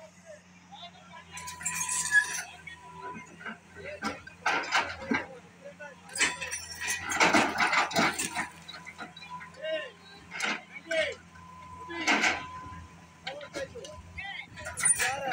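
Hydraulic excavator demolishing a concrete-block house: its bucket breaks the walls and chunks of masonry crash and clatter down onto the rubble in several separate falls, the biggest and longest about six to eight seconds in. The excavator's diesel engine runs with a low steady hum underneath.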